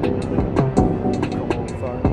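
Elektron Model:Samples groovebox playing an electronic drum pattern, with sharp hits about four a second over a sustained pitched bass part.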